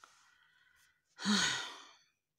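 A woman's long voiced sigh about a second in, breathy and falling in pitch, a sigh of exasperation at her own forgetfulness.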